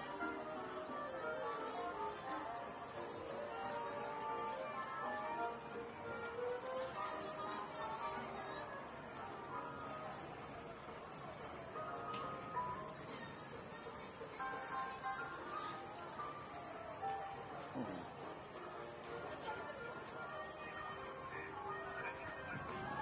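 Steady high-pitched buzzing of cicadas in the trees, with faint music playing underneath.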